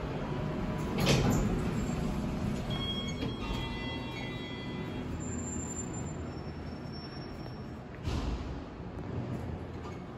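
Montgomery KONE hydraulic elevator arriving at a floor and its sliding doors opening, over a steady low machinery hum. There is a sudden thump about a second in, a few seconds of faint high-pitched tones in the middle, and another thump near the end.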